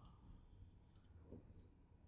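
Near silence, with a faint computer mouse click about a second in.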